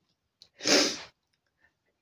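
A woman's single loud, noisy breath while crying, lasting about half a second around the middle.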